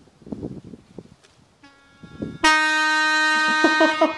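A loud, horn-like blast held on one steady pitch starts abruptly about two and a half seconds in and lasts about a second and a half. A fainter steady tone comes just before it.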